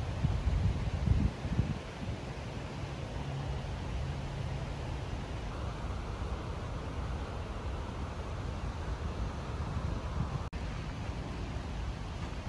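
Wind buffeting the microphone, with a few louder gusts in the first two seconds, then a steady rushing noise.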